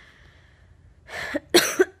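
A woman coughing: a short breath, then two quick coughs about a second and a half in. She is ill with a cold and bringing up mucus.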